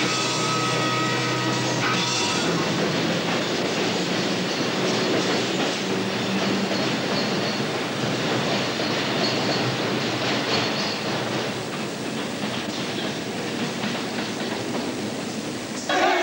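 Music ends about two seconds in. An underground train then runs into the station, a steady noise of wheels on rails that eases slightly near the end.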